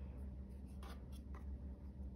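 Tarot cards being slid across and laid onto a tabletop: faint papery scraping in a few brief strokes, over a low steady hum.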